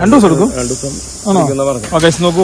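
A man's voice speaking in two short stretches, over a steady high hiss.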